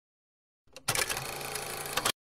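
Dead silence, then about two-thirds of a second in, a rapid mechanical clattering sound effect cuts in and runs on until it stops abruptly just after.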